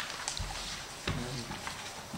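Paper handouts being handled and passed around, with scattered rustles and a few light knocks.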